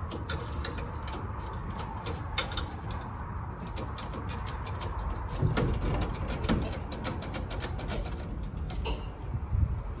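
Irregular clicking and rattling of a Chevy Vega's ignition key and lock cylinder while the locked steering wheel is worked back and forth to free it. There are a couple of duller knocks from the steering column about halfway through.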